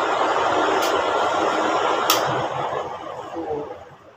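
Steady running noise of an electric machine, with a click about halfway through, after which the noise dies away over the next two seconds as the machine is switched off.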